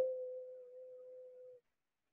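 A woman's voice holding one long, steady hummed tone that fades away and stops about three-quarters of the way through.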